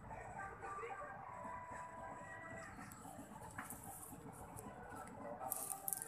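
Faint, indistinct voices of people talking at a distance, over a steady low rumbling noise, with a few soft clicks near the end.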